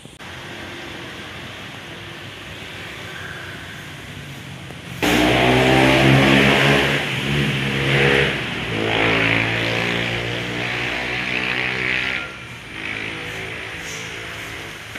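Motorbike engine running close by. It starts abruptly about five seconds in and runs loud with shifting pitch until near the end, over a steady background hiss.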